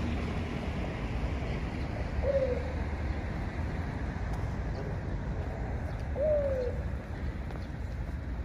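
A dove cooing twice, two short notes about four seconds apart, each rising then falling in pitch, over a steady low rumble of road traffic.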